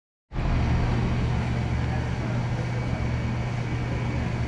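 A steady, low mechanical hum or rumble that sets in a moment after the start and holds even.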